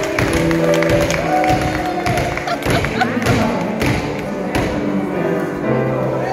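Small hammers striking a slab of solid chocolate in irregular thuds and taps as it is smashed up, over live instrumental music with long held notes that slide in pitch.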